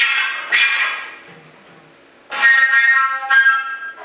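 Concert flute played with extended techniques, airy and forceful jet-whistle blasts. A loud breathy attack fades over about a second, and after a short lull a second loud, noisy blast comes about two seconds in and lasts just over a second.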